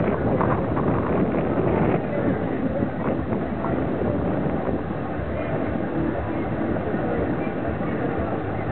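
Indistinct voices over a steady rushing noise, with the voices clearest in the first couple of seconds.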